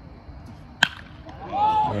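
Baseball bat hitting a pitched ball: one sharp crack a little under a second in. A spectator then calls out loudly.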